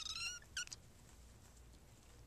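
A young kitten mewing twice in quick succession, high-pitched: a longer mew followed by a short one about half a second in.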